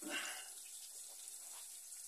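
Faint, steady sizzle of chopped garlic and chili cooking gently in oil in a saucepan.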